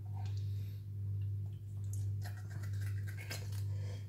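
Hands and a knife working a skinned rabbit carcass: short scraping, tearing and clicking sounds, bunched together about two to three and a half seconds in, over a steady low hum.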